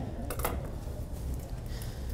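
Low steady background hum of the grooming area, with one brief soft rustle about half a second in.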